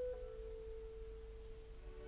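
Clarinet holding a single soft, nearly pure note, fading slightly, over the low hum of an old recording.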